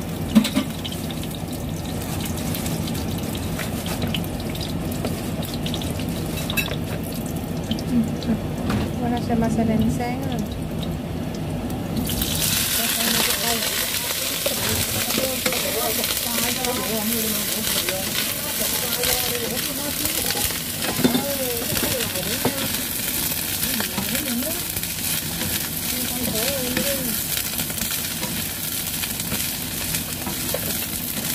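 Garlic frying gently in oil in a non-stick wok, stirred with a wooden spatula. About twelve seconds in, broccoli florets go into the hot oil and a much stronger, steady sizzle sets in as they are stir-fried.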